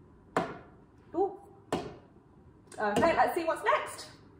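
A woman's voice: a few short separate sounds early on, then about a second of speech near the end.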